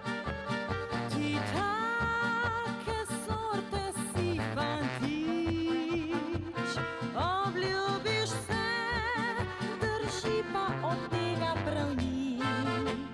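Slovenian folk-pop band music: an instrumental passage with trumpet and clarinet playing the melody over a regular bass beat.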